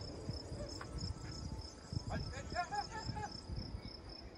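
Insect chirping: a steady, high-pitched pulsing at a few pulses a second. A brief run of short pitched calls joins it about two seconds in, over a low outdoor rumble.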